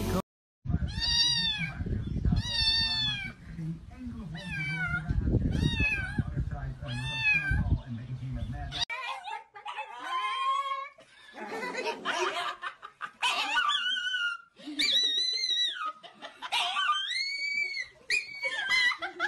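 Evenly spaced wailing animal cries, about one every second and a half, over a low rumble; from about halfway a small chihuahua-type dog howls in long yowls that rise and fall in pitch.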